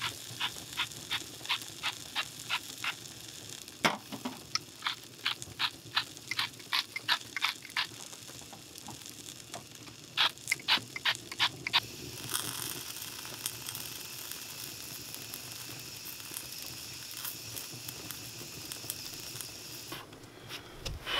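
A hand-held seasoning mill grinding over a steak, in quick runs of sharp clicks about three to four a second, with one louder knock just before four seconds in. From about twelve seconds in, a steady sizzle with fine crackle from food frying in a pan.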